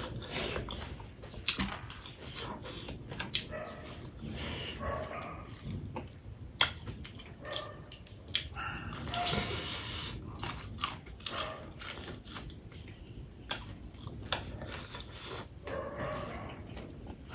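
Close-up eating sounds of a person chewing mouthfuls of rice and greens eaten by hand, with many short wet clicks and lip smacks at irregular intervals.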